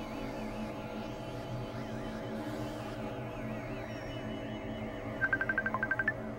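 Electronic synthesizer drone music: layered steady low tones under a warbling higher tone. Near the end comes a quick run of short, high beeps.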